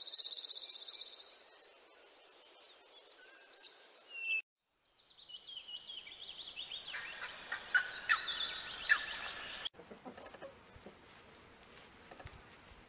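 Outdoor nature sound across several spliced clips: a fast buzzing trill for about the first second, then several small birds chirping and singing together for about five seconds in the middle, cut off abruptly and followed by a faint outdoor background.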